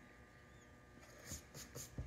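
Near silence, then about a second in a few faint short scratchy strokes and soft taps of crayon and hand on sketchbook paper.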